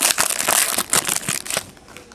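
Foil trading-card pack wrapper crinkling as it is pulled open and the cards are slid out, a dense crackle of small clicks that dies away after about a second and a half.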